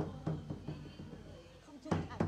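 Large red barrel drum struck with a stick: a run of even beats that spaces out, two quick strokes at the start, then a gap and another stroke near the end. It is the signal drum beaten to start the dealing of cards.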